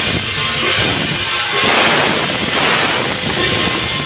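Traditional Taiwanese temple-troupe percussion: drums with cymbals and gongs clashing continuously.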